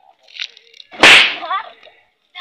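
A single loud, sudden crack with a hissing tail about a second in, fading over about half a second. A smaller short rustle comes just before it.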